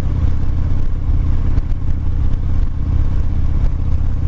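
Cruiser motorcycle engine running steadily at road speed, mixed with a heavy, even rumble of wind.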